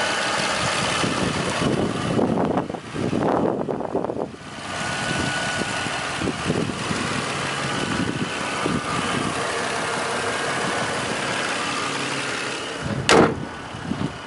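Lexus RX330's 3.3-litre V6 idling steadily. About a second before the end comes a loud slam as the hood is shut, and the engine sounds quieter after it.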